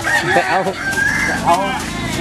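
A rooster crowing, with people talking around it.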